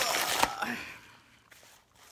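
Paper mail and packaging rustling as it is handled, with a sharp knock about half a second in; it dies away after about a second.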